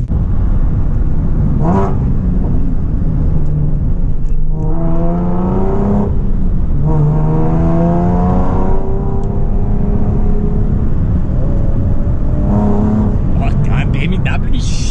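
Nissan 350Z's V6 exhaust heard from inside the cabin, the engine still cold from a fresh start. The revs climb twice, about five and about eight seconds in, with a drop in pitch between them at a gearshift, then settle to a steady cruise.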